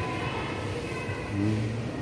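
Steady background noise of a crowded exhibition hall, with a short drawn-out vocal hum from a man about one and a half seconds in.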